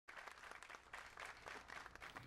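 Faint applause from an audience, many hands clapping unevenly.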